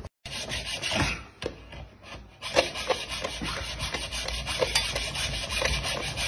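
Hacksaw sawing through the hard shell of a cooked lobster. From about two and a half seconds in it settles into a steady run of scraping back-and-forth strokes.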